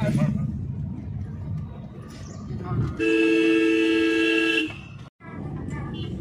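A car horn sounds one steady two-tone blast, about a second and a half long, some three seconds in. Under it is the low running rumble of the car heard from inside the cabin.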